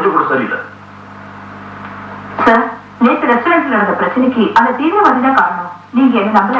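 Film dialogue: a man speaking in short phrases, with a pause of about two seconds before talking resumes. A steady low hum runs under it.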